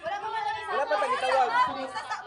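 A group of people all talking and calling out over one another in excited chatter, loudest a little past the middle.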